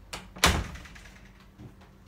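A sharp thump about half a second in, with a lighter tap just before it and another faint one about a second later.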